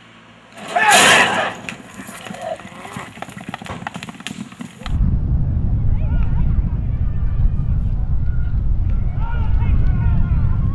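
Horses breaking from metal starting gates: a loud bang as the stalls open about a second in, then clattering hooves and rattling gate metal. From about halfway a steady low rumble takes over, with spectators shouting as the horses gallop down the track.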